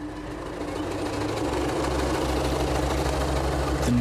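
Heavy diesel engine of dump machinery running, with a low, uneven throb that grows louder about a second and a half in.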